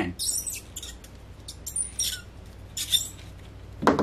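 Countersink bit turned by hand, scraping into a screw hole in a clear Lexan plastic plate: three short scratchy strokes, one with a brief high squeak. It is cutting the countersink a turn or two at a time so the screw head will sit flush.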